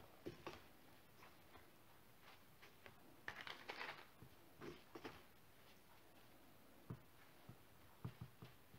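Near silence with faint rustles and light taps of hands handling starch-coated Turkish delight cubes and the parchment paper of a box, most of them in a short cluster about three to four seconds in.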